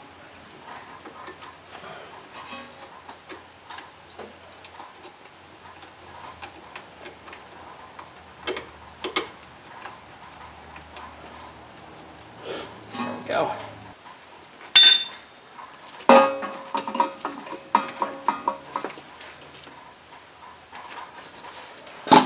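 Hand tools and steel fasteners being handled at a car's front strut: scattered light metallic clicks, taps and clinks as a bolt is started and a socket on an extension is fitted, with one sharp ringing clink about fifteen seconds in.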